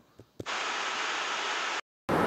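Steady static hiss on the recording, starting with a faint click about half a second in and cutting off abruptly just before the end.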